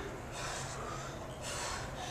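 A person breathing hard, two noisy breaths about a second apart: winded from exertion in the middle of a set of barbell power snatches.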